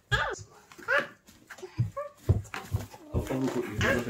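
A toddler's short, high-pitched vocal calls, each rising and falling, about one a second, then more continuous voice near the end.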